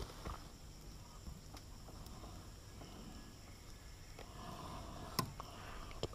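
Faint outdoor ambience with a few small clicks and rustles of hands handling a prawn and fishing line, the sharpest click about five seconds in.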